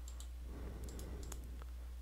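Several faint computer mouse clicks, scattered irregularly, over a low steady hum.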